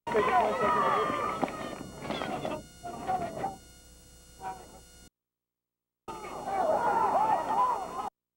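Outdoor crowd of spectators chattering, with no single clear voice; loud at first and fading over the first few seconds. The sound cuts out completely for about a second around the middle and comes back with the same busy chatter near the end, as in a spliced videotape.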